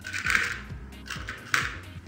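Two short rustling noises, one early and one about one and a half seconds in, as long hair is handled and pinned into a bun with bobby pins, over background music with a steady beat.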